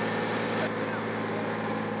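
Military truck's engine running steadily at low speed: an even, low hum.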